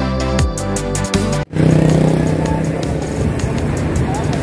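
Background music that cuts off about a second and a half in, giving way to steady road-traffic noise with motorcycle and car engines running past.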